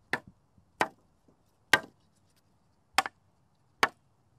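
A series of sharp, short knocks, five in four seconds at uneven spacing, one of them doubled.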